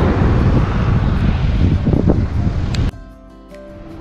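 Wind buffeting the microphone, a heavy low rumble, for about three seconds, then cut off suddenly, leaving soft background music with steady held notes.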